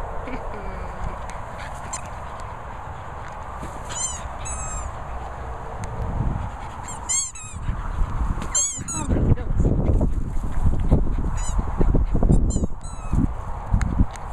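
Rubber squeaky dog toys being chewed, giving quick runs of high squeaks several times over, with a low rumbling noise through the second half.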